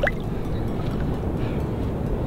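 Shallow seawater washing around the waders' legs and hands, a steady low rush of surf.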